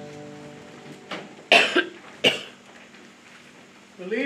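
The last strummed chord of two acoustic guitars fades out, then a person coughs several times, about one and a half to two and a half seconds in.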